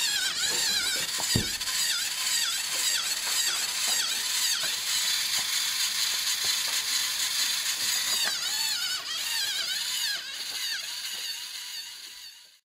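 A small robot's electric gear motors whining as it drives, the pitch wavering up and down two or three times a second. There is one dull knock about a second and a half in, and the whine fades out near the end.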